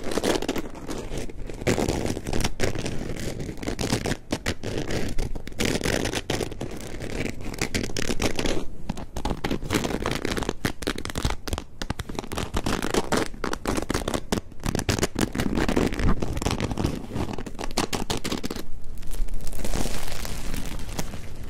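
Crusty baguette crust rubbed and scratched with fingers right against the microphones, a dense continuous crackling and scraping. It gets louder near the end as the loaf is squeezed in both hands.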